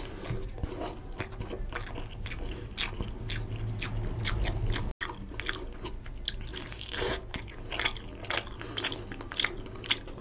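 Close-up eating sounds of fish curry and rice eaten by hand: chewing with many quick, wet mouth clicks. The sound drops out for a moment about halfway through.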